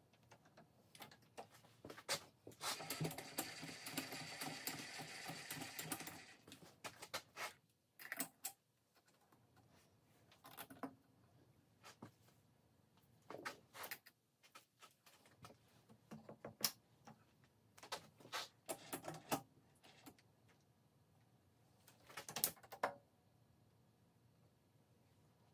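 Intermittent metallic clicks and clinks of valve-spring assembly on a cast-iron Ford 427 FE cylinder head: a valve-spring compressor pressing springs and retainers down and keepers being seated. A denser stretch of rattling comes a few seconds in, then scattered clicks.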